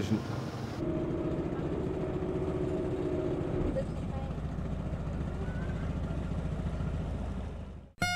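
A boat engine running steadily, a low rumble with a fast even throb, fading out just before the end.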